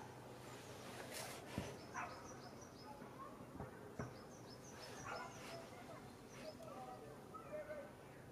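Quiet outdoor background with a few faint high chirps scattered through it and a couple of soft knocks.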